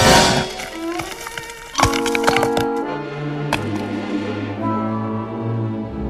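Orchestral cartoon score with brass, opening on a loud crash that dies away within half a second, with sharp hits at about two seconds and three and a half seconds before it settles into held low notes.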